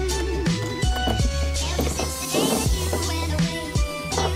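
Background music with a deep bass line and a steady drum beat.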